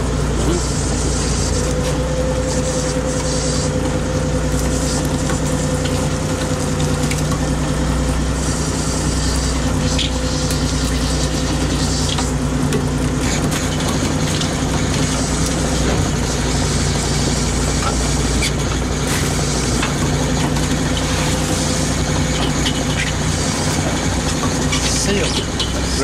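Fishing boat's engine running steadily, a constant low drone with a rushing hiss over it, while gill nets are hauled aboard.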